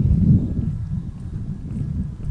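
Low, uneven rumble of wind buffeting and handling noise on a hand-held phone microphone carried at a walk, loudest in the first half second.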